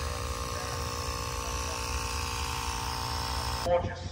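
A steady mechanical hum at an unchanging pitch, with no speech over it, that stops abruptly near the end.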